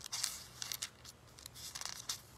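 Paper Bible pages being turned, a run of short rustles, softer toward the end.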